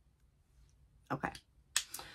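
A short, sharp click about three-quarters of the way in, right after a spoken 'okay'.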